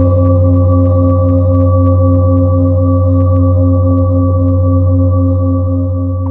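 Large metal singing bowl ringing after a single strike with a felt mallet: a deep, loud hum with higher overtones, one of which pulses in a steady wobble a few times a second. It begins to fade slowly near the end.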